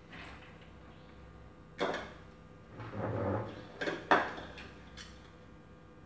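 Flat metal scraper knocking and scraping frozen ice cream off a chilled metal cylinder and into a ceramic bowl: a handful of short clinks and scrapes, the sharpest about two seconds in and just after four seconds, with a duller knock around three seconds.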